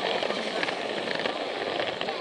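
Battery-powered Plarail toy train running along plastic track, heard from on board: its small motor and gears whirring steadily with a rapid rattle of wheels on the track joints.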